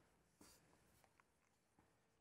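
Near silence: room tone, with a faint rustle about half a second in and a few tiny ticks, typical of paper notes being handled on a lectern.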